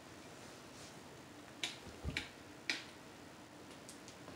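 Faint, sparse crackling from a stove-style fireplace: a handful of short, sharp pops at irregular intervals over a low steady background, with a soft thud about two seconds in.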